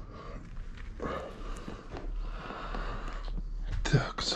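Rustling and shuffling noise from someone moving about the room, with a sharp knock just before the end.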